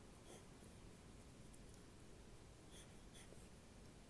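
Faint pencil strokes scratching on sketchbook paper: a few short scratches, one just after the start and a couple near the end, over low room hiss.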